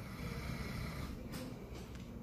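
A man snoring in his sleep: a low, rough, steady drone.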